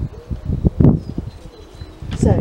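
A few low knocks and a thump as a spiral-bound sketchbook is set back onto a wooden easel and handled, the loudest knock just under a second in.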